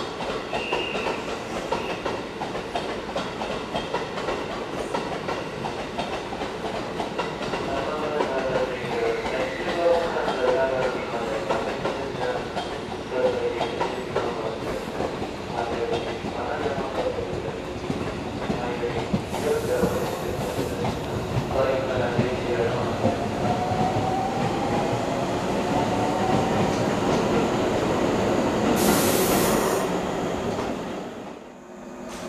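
A JNR 113-series electric multiple unit pulls into a station platform, its wheels rumbling and clattering over the rails. From about a quarter of the way in it squeals as it slows, and a slowly rising tone comes in near the end.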